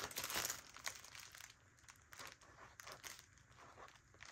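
Faint scratching of a pen writing on a paper card, with light crinkling from the plastic package the card rests on.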